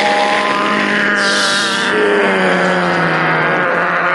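A man imitating a diving jet fighter with his voice into a microphone: one long droning tone that slowly falls in pitch, with a hiss about a second in.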